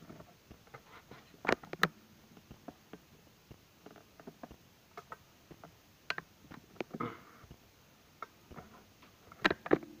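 Scattered light clicks and knocks of handling in a small room, with a louder pair of knocks about a second and a half in and another cluster near the end.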